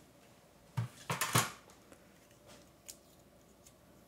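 Die-cutting plates and a die being handled and set down: a few sharp clattering knocks about a second in, then a couple of faint clicks.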